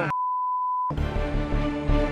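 A single steady high-pitched censor bleep, under a second long, with all other sound muted beneath it, masking a word; then background music with sustained tones carries on.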